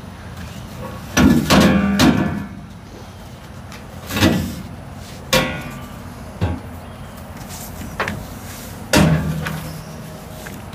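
Knocks and clatters of a pipe and other loose items being shifted around on a loaded trailer bed: a quick cluster about a second in, then single knocks every second or two, some with a short ring.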